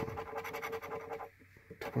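A metal scratcher coin scraping the latex coating off a paper lottery scratch ticket in rapid back-and-forth strokes, with a short pause about a second and a half in.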